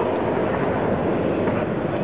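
Steady, echoing background din of a sports hall during a boxing bout: a murmur of spectators and general hall noise, with no distinct punches or voices standing out.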